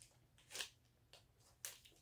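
Near silence broken by a few faint, short rustles of a clear plastic snack bag being handled.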